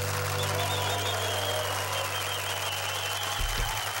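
A live band's closing chord dies away, leaving a held low bass note that stops shortly before the end, under applause and a high wavering whistle-like tone.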